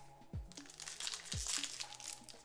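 Foil Pokémon booster pack wrapper crinkling in the hands as it is worked open, starting about half a second in. Background music with a steady beat plays underneath.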